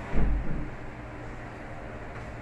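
A brief, loud, low thump about a quarter second in, with a second smaller one just after, over a steady low hum.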